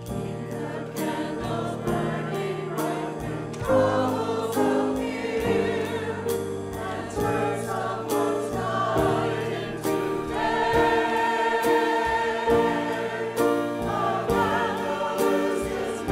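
Church choir singing with instrumental accompaniment, sustained chords that change every second or so.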